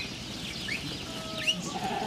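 A herd of goats milling about, with a few faint bleats from the herd.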